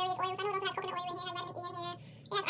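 A woman talking; her words are indistinct and her voice sits high and fairly even in pitch. It fades out near the end.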